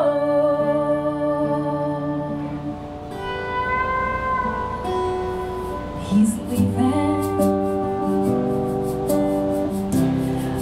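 Live band music: acoustic guitar with long held sung or sustained notes between vocal lines, and light rhythmic cymbal taps in the second half.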